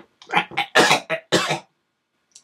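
A person coughing three times in quick succession, short harsh bursts with a rough voiced edge, which he puts down to sinus trouble.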